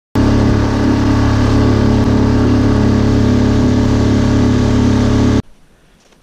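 An engine running steadily at constant speed, loud and unchanging, cut off abruptly after about five seconds.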